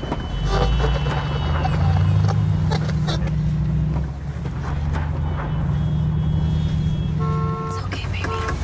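Car engine running steadily while driving, heard from inside the cabin as a low, even hum. A short steady tone sounds near the end.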